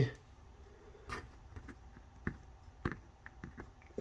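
A few faint, scattered clicks and light taps of test leads and small parts being handled on a bench, over a low room hum.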